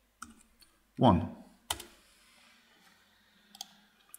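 A few sharp, isolated clicks from a computer keyboard and mouse, the loudest a little under two seconds in and fainter ones near the start and the end.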